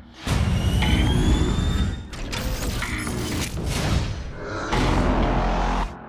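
Film-trailer score with heavy booming hits and mechanical sound effects, cutting in abruptly a moment in and stopping sharply just before the end.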